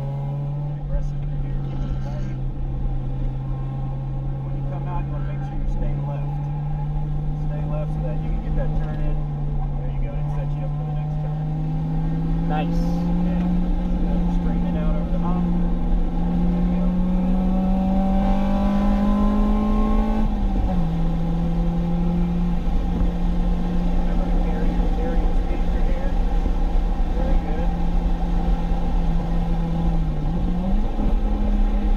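Acura RSX Type-S's K20 four-cylinder engine under load at track speed, heard from inside the cabin with road and wind noise. Its note climbs slowly for about twenty seconds, drops sharply at a gear change, holds steady, and starts climbing again near the end.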